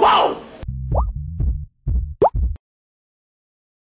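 Cartoon sound effects: a falling pitched tone trails off, then a string of short low plops with two quick rising whistle-like glides. It all cuts off to silence about two and a half seconds in.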